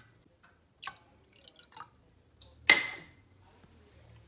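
A few faint drips as the last water runs from a glass measuring cup into a stainless steel saucepan, then a single sharp clink with a brief ring about two and a half seconds in as the cup is set down.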